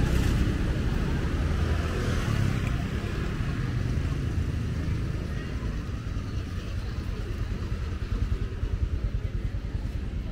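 Motor scooter engines running on a busy street, a steady low rumble of traffic with one scooter close by.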